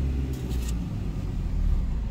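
Chevrolet Spark's small four-cylinder engine and road rumble heard from inside the cabin as the car creeps forward, a steady low rumble. A brief rustle comes about half a second in.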